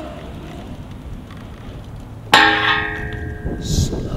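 A BMX bike striking metal at a skatepark: one sharp clang about two seconds in that rings on for about a second and a half, with a short hiss near the end.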